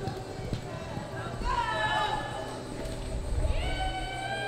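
A horse running on arena dirt into a sliding stop, its hoofbeats low thuds. Two long high calls are heard over it, one about a second and a half in and another near the end.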